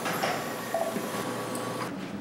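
Steady hiss and hum of operating-room equipment, with a faint steady high tone running through it; the hiss drops away abruptly near the end.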